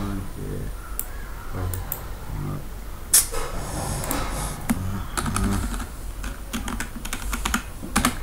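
Typing on a computer keyboard: irregular keystroke clicks, with one louder click about three seconds in.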